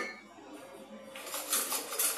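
Faint handling of bar utensils and glassware: a quiet first second, then light clinks and rustle from about a second in.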